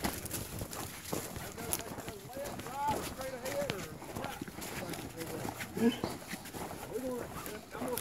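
Coonhounds giving short barks and bawls, in a cluster a couple of seconds in and again a few times near the end. Under them are scattered crunches and rustles of people moving on foot through leaves and brush.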